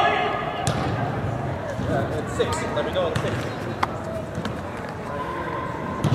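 Voices shouting during an indoor soccer game, with sharp thumps of a soccer ball being kicked on turf, one under a second in and a louder one near four seconds.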